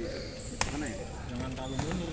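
A badminton racket striking a shuttlecock: one sharp crack about half a second in, with a fainter hit near the end, over background voices.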